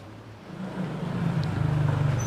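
Small motor scooter engine approaching, its steady low hum growing louder from about half a second in.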